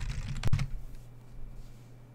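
Typing on a computer keyboard: a quick run of keystrokes with one louder key press about half a second in, then the typing stops and only a faint low steady hum remains.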